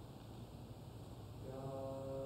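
Quiet room noise, then about a second and a half in a few voices begin singing slow, held notes, unaccompanied.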